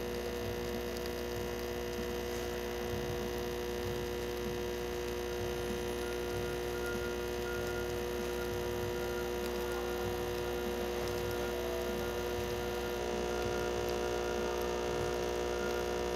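Breville 870XL espresso machine's vibratory pump humming steadily while pulling an espresso shot, the pump pressure holding very consistent.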